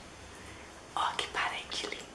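A woman whispering a few words close to the microphone, in short breathy bursts starting about halfway through.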